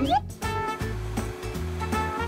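Vacuum cleaner running, its hose held against a woman's hair, under louder background music.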